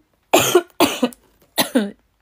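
A woman coughing three times in quick succession, each cough short and loud.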